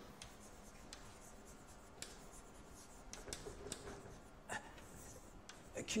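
Chalk writing on a blackboard: faint, irregular scratches and taps of the chalk as a word is written out.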